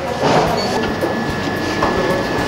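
Shop-floor background noise: a dense, steady din with indistinct voices under it and a thin, steady high whine.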